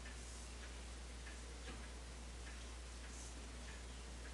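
Faint, evenly spaced ticking, a little under two ticks a second, over a steady low hum.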